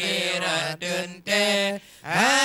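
A man's voice chanting an unaccompanied Acehnese devotional chant (meudike) into a microphone. The notes are held and bent in short sung phrases, with brief breaks between them and a short pause near the end.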